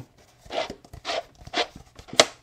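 Thin plastic two-liter bottle crinkling and crackling in the hands as it is twisted and screwed into a threaded machined metal block: a series of short crackles.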